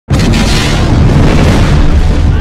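A large explosion: a sudden, loud blast right at the start that carries on as a sustained roar with a deep rumble.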